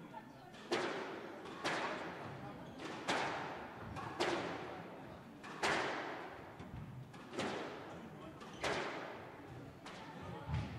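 A squash rally: the rubber ball is struck with rackets and smacks off the court walls, sharp cracks about every second to second and a half, each echoing in the court.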